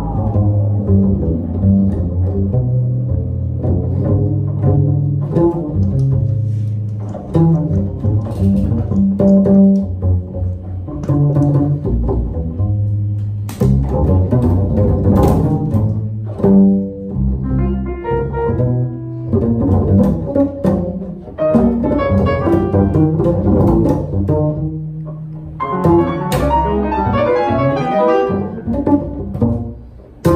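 Improvised acoustic music led by a double bass plucked pizzicato in a loose, irregular line of low notes, with piano and other instruments underneath. A few sharp knocks cut through, and the piano grows busier and more prominent near the end.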